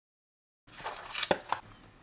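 Dead silence at first, then handling noise as a Wera ratcheting screwdriver is lifted out of its plastic presentation case: rustling and scraping with two sharp clicks about a second and a half in.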